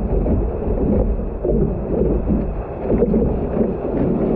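Seawater sloshing and splashing against a surfboard right at the camera's microphone, a loud, continuous low rumbling wash.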